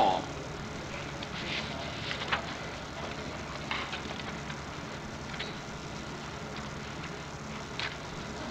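Steady hiss and low hum of an old archival courtroom recording, with a few faint clicks and rustles scattered through.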